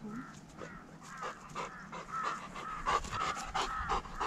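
A dog panting quickly, about three breaths a second, starting about a second in.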